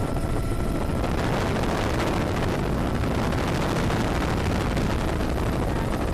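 Steady helicopter noise from inside the cabin: the engine and rotor running evenly in low-level flight.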